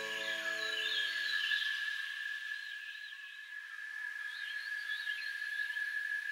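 A soft piano chord fades away over the first second or two, leaving birds chirping in short warbling phrases over a steady high-pitched tone.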